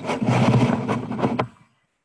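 A loud, scratchy rough noise with a few clicks in it, stopping abruptly about a second and a half in.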